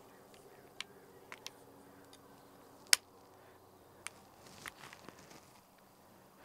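Carbon-fibre tripod legs being swung out through their leg-angle stops: a few sharp clicks of the angle locks, the loudest about three seconds in, with light handling rustle near the end.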